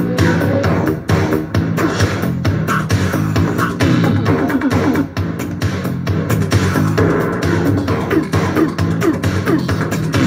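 A song with a steady beat playing loud through a homemade Bluetooth speaker: two 8-inch Rockville marine speakers in a sealed hard case, driven by a 320 W Bluetooth amp.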